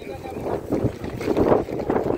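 Strong, gusty wind buffeting the microphone with a low rumble, swelling loudest about halfway through.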